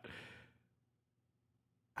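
A brief, faint exhale in the first half second, fading out, then near silence.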